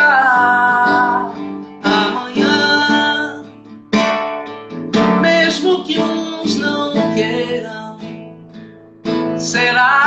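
A woman singing to her own strummed acoustic guitar. She holds a long note at the start, then the guitar chords ring on between shorter sung phrases.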